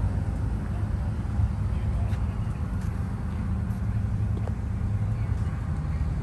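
An engine running steadily with an even low drone while the loaded work barge is under way.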